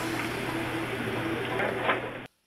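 Steady low hum of commercial-kitchen ventilation, an even noise with a faint steady drone.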